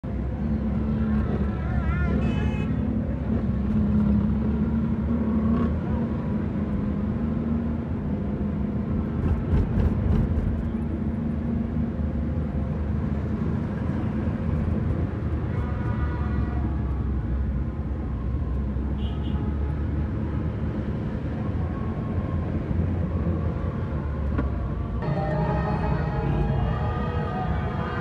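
A car's engine and road noise heard from inside the cabin while driving: a steady low rumble, with a few brief higher sounds from the traffic around it.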